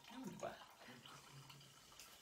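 Faint trickle of a dark mixed fizzy drink being poured from a jug into a cup, under faint murmured voices.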